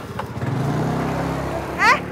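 Small motor scooter engine running close by with a steady hum; a voice calls out "Eh" near the end.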